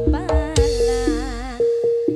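Live dangdut band music: a quick hand-drum pattern and a steady held keyboard note under a wavering melody line with vibrato, and a cymbal crash about half a second in. The drums and bass drop out briefly near the end.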